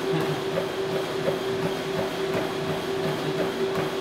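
Matrix treadmill in use with a runner on it: the belt motor's steady whine under a quick, even rhythm of footfalls landing on the deck.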